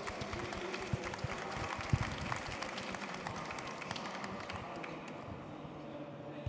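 Audience applauding, a dense patter of claps that thins out toward the end, with one dull thump about two seconds in.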